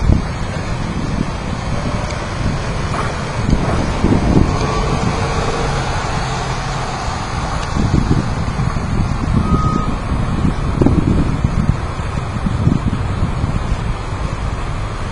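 Street noise outdoors: wind buffeting the microphone in irregular low gusts, with road traffic going by.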